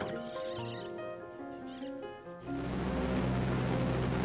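Background music with sustained tones. About halfway through, the steady, loud noise of a DC-3's twin piston engines, as heard in the cockpit in flight, cuts in under the music.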